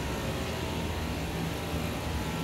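A steady low hum with an even hiss of background air noise and no distinct events.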